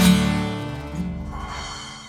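Final chord of two acoustic guitars ringing out and fading away, with a soft cymbal shimmer in the second half as the song ends.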